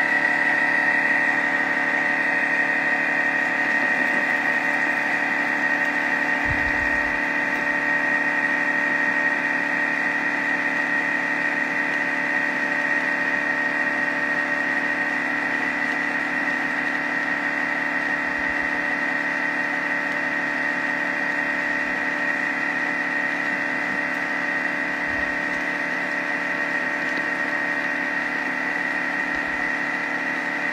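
Thermomix kitchen machine's motor running at a constant speed with a steady high whine.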